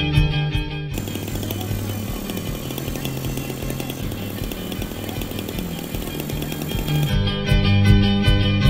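Electric radio-controlled helicopter running on the ground, its motor and spinning rotor blades making a steady whirring noise for about six seconds. Guitar music plays before the whirring starts and comes back in near the end.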